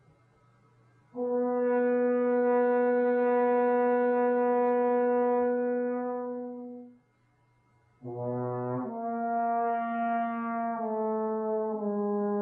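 Solo trombone: one long held note that fades out, a short pause, then a note that slides up into pitch and steps down twice.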